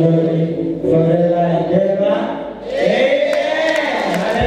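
A worship team of voices singing slowly together in a chant-like way, holding long notes, with no drums. A brighter, higher voice part joins near the end.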